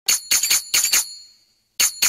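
Intro of an Arabic pop song: a tambourine plays a quick run of about five jingling strikes that ring on and die away. After a brief pause the same pattern starts again near the end.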